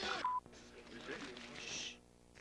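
Commercial soundtrack: a brief burst of voice that ends in a short steady electronic beep, then a much quieter stretch with only faint sound.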